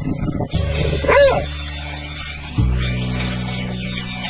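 A beagle barks once, an arching bay, about a second in, over background music with sustained bass notes.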